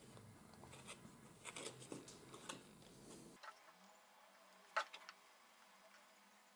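Faint paper handling: fingers and a small tool pressing and tapping the card faces of a glued paper polyhedron, with soft scattered crinkles and ticks and one sharper click near the end.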